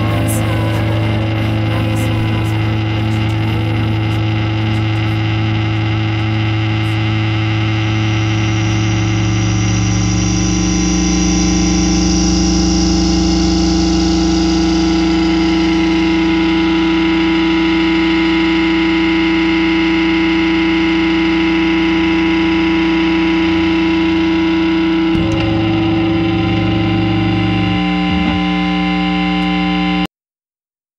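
Distorted guitar drone run through effects: loud, sustained, overlapping tones that shift in pitch about a third of the way in and again near the end, then stop.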